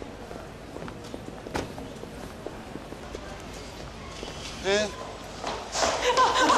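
Footsteps on a pavement over a faint, steady street background. About three-quarters of the way through comes a short, rising, voice-like sound.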